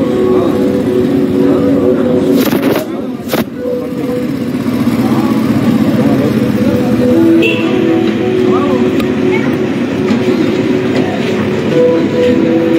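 Busy street sound: motorcycle and vehicle engines with voices, under a pair of steady held tones.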